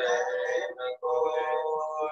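A male voice singing a Hindi devotional hymn over a video-call connection: a short phrase, a brief break about a second in, then a long, steady held note.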